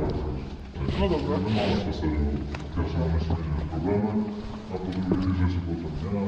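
People talking in Polish over a heavy low rumble.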